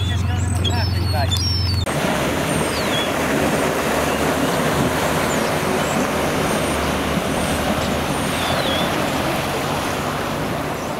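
A steady low hum with faint high calls, cut off suddenly about two seconds in. Then the outboard motor of a rigid inflatable boat running under way, with the rush of its churning wake.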